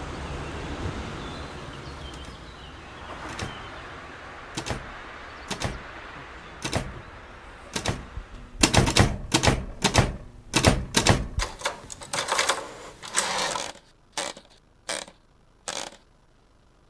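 Typewriter keys typing: a few scattered keystrokes over a steady background hiss, then a fast run of keystrokes about halfway through, followed by a few more single strokes near the end as a line of text is typed.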